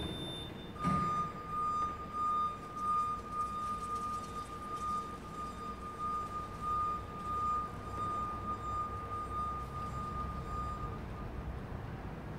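Steady high-pitched warning tone from a very narrow aisle (VNA) truck while it travels, starting about a second in and stopping near the end, over the truck's low hum.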